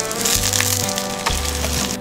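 Hotteok sizzling in oil on a flat griddle, under background music with a bass note that recurs about once a second.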